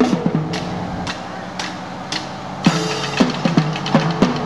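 A parade drum line playing a street cadence. For the first couple of seconds it thins to a single stroke about every half second, then the full pattern comes back in with a loud hit.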